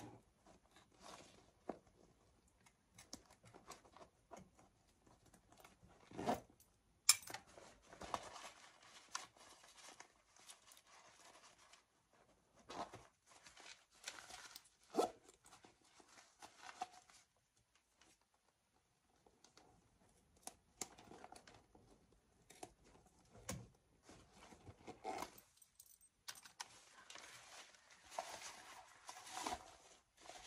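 Scissors cutting into a white Dolce & Gabbana handbag, with rustling and crinkling as the bag and its satin lining are handled and pulled apart. Scattered light clicks throughout; the loudest is a sharp snap about a quarter of the way in.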